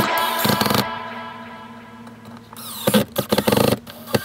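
Background music fades out in the first second. Then a cordless drill used as a screw gun runs in a quick series of short trigger bursts around three seconds in, driving a long screw into the wooden hangboard that is hard to get flush.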